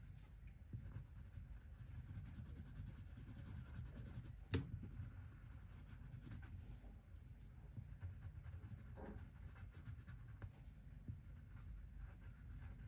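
Wax-core coloured pencil (Leo&Leo Carbon Line) scratching faintly on paper in quick, short colouring strokes, with a single sharper tap about four and a half seconds in.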